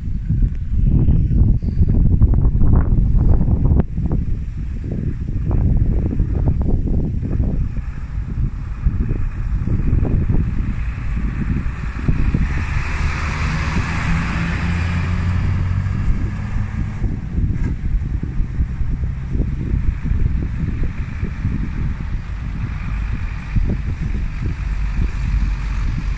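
Wind buffeting the microphone in a continuous low rumble, with vehicle noise swelling about halfway through: a steady engine hum and a hiss like tyres on tarmac.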